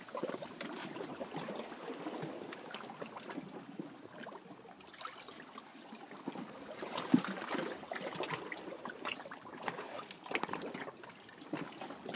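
Sea water lapping and trickling among shoreline rocks, an uneven wash with many small crackles and clicks, swelling a little twice in the second half.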